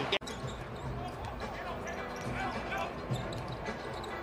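Basketball game audio: a ball being dribbled on a hardwood court amid low arena noise and faint voices. A brief dropout comes at an edit just after the start.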